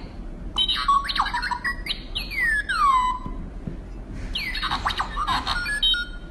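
Sound module in a novelty music mug playing electronic chirping tones in three bursts, each a quick run of sweeps that mostly slide down in pitch.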